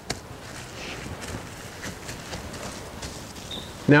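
Faint crinkling and crackling of plastic wrap as gloved hands press and smooth it around a sausage log, with a few soft ticks scattered through.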